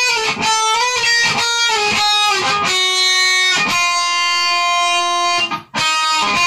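Epiphone guitar being picked, single notes with some sliding in pitch, then one note left ringing for about three seconds before it is cut off shortly before the end.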